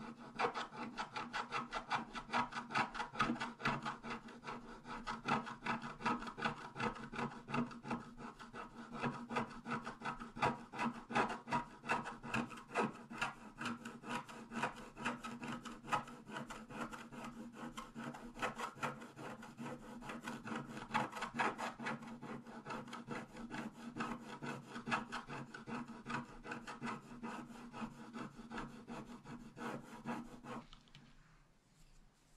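Wooden scratch stick scraping the black coating off a scratch-art card in quick, short, repeated strokes, many a second.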